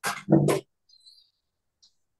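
A person's short, unintelligible vocal sound over a video call, about half a second long, with a sharp start.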